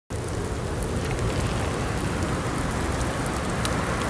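Steady rain falling, an even hiss with scattered single drops ticking through it and a low rumble underneath.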